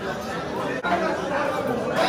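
Several people talking: background chatter of voices.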